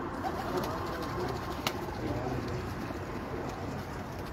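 A flock of domestic pigeons cooing, many calls overlapping into a steady background, with a single sharp click a little before halfway through.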